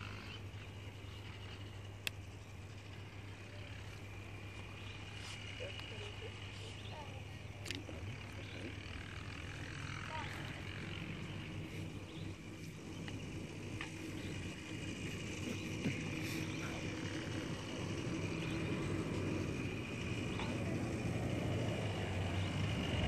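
Knife carving a small painted wooden fridge magnet by hand, with occasional small clicks and scrapes, over faint distant voices and a steady low hum. The overall level rises slowly toward the end.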